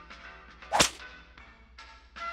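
Cartoon sound effect: one short, sharp whip crack a little under a second in, over faint background music.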